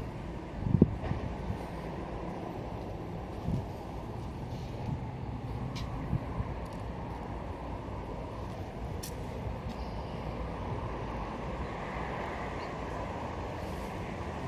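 Steady low rumble and hum of outdoor background noise, with a faint thump about a second in and a few faint clicks later.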